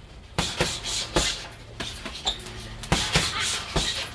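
Hooks and elbows landing on a hanging heavy punching bag: a run of about seven sharp thuds at an uneven pace, some in quick pairs.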